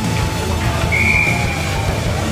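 Music playing through the rink's sound system, with one short, high, steady whistle blast about a second in from a referee's whistle.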